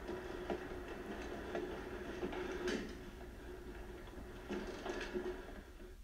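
Faint film soundtrack heard from a TV's speakers: a quiet scene with a low steady hum and a few soft clicks.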